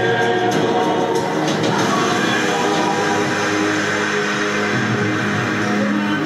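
Several voices singing together in chorus, holding long notes, over acoustic guitar accompaniment.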